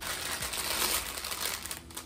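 Clear plastic packaging bag crinkling as it is handled, a dense crackle that swells in the middle and thins near the end.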